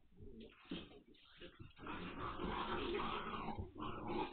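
Nine-week-old Hungarian Vizsla puppies play-fighting: short puppy vocalisations and scuffling, building to a dense, busier stretch from about two seconds in.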